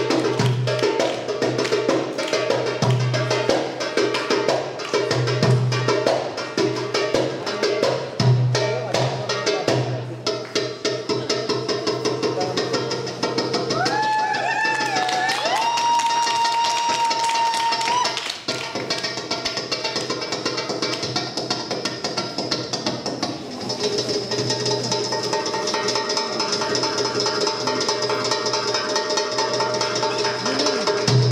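Darbuka (Arabic goblet drum) played fast for belly dancing: dense crisp strokes with deep bass strokes recurring every second or two. About halfway, a high tone glides and then holds for a few seconds over the drumming.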